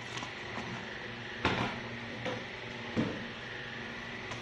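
Cardboard model-kit box and paper instruction manual being handled: faint shuffling and small clicks, with one sharper knock about a second and a half in.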